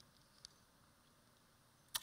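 Near silence: room tone, with a faint click about half a second in and a sharp click at the very end.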